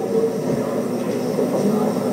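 Steady rumbling room noise with the faint, indistinct voice of an audience member asking a question, too weak to make out.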